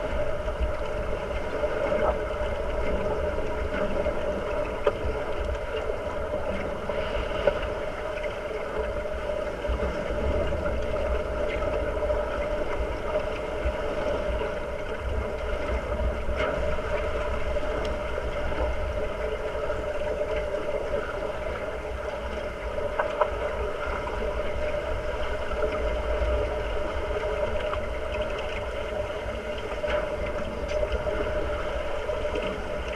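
Underwater ambience in a swimming pool, heard through a submerged camera: a steady muffled hum and rumble of water, with a few sharp clicks and knocks scattered through it.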